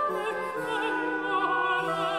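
A soprano singing a baroque aria with wide vibrato, accompanied by a small period ensemble playing held notes beneath her voice.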